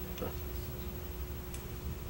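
Steady low hum of a quiet meeting room's ambience, with a single faint click about one and a half seconds in.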